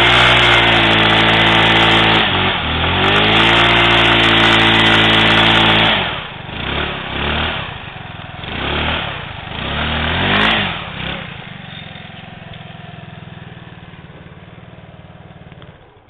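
Baotian Tanco 50cc scooter engine held at high revs for a burnout, the rear wheel spinning on grass, with a brief dip about two and a half seconds in. About six seconds in the throttle drops off, the engine gets four short revving blips, and it then settles to a steady idle.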